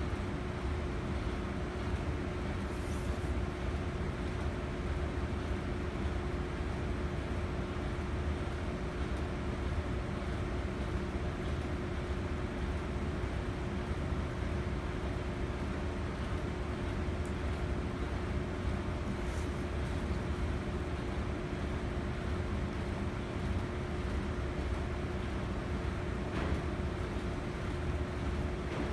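Steady hum and hiss of the room's ventilation, with a constant mid-pitched tone under it. Now and then a faint scratch as a craft knife cuts through a paper stencil.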